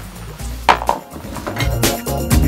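A sharp clack and a few lighter knocks of hard items being handled in a plastic storage bin, about two-thirds of a second in. Rhythmic background music comes in near the end.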